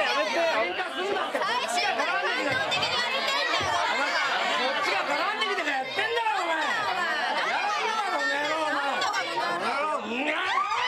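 Several people talking at once, their voices overlapping in a continuous jumble of chatter.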